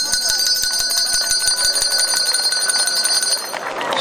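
A handbell rung rapidly by hand, with fast, even strokes of the clapper and a bright, ringing tone, for about three and a half seconds before it stops. It is the first bell announcing the opening of the school year.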